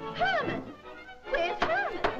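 Cartoon soundtrack: two swooping, voice-like slides in pitch, each rising and then falling, over music, with a sharp knock near the end.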